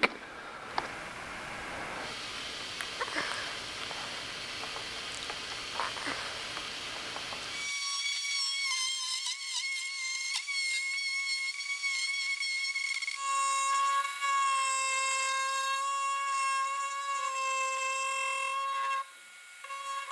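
Aluminum tape being peeled off a plastic part, a faint hiss with small crackles. About 8 seconds in, a die grinder with a tapered burr starts up with a steady high whine and hiss, boring out the mounting hole that the plastic weld filled in. About 13 seconds in the whine steps lower and gets louder, and it cuts out briefly near the end.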